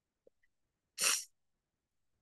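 A woman sneezing once, a short loud burst about a second in.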